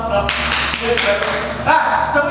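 A quick, irregular run of about six sharp slaps of hands striking, then a person's voice near the end.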